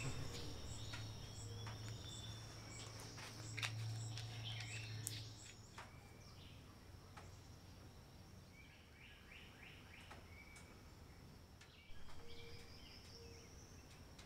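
Faint outdoor ambience: a steady high insect trill throughout, a low hum that fades out about halfway through, and a short run of bird chirps a little past the middle, with a few faint clicks.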